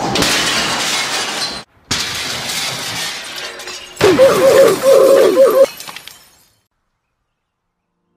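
Steady rushing noise with a brief break, then about four seconds in a grand piano smashes onto cobblestone pavement: a very loud crash of breaking wood and jangling strings that stops abruptly before six seconds and fades out.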